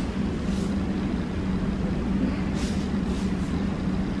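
Steady low hum at one constant pitch, with a rumble beneath it and a few faint rustles.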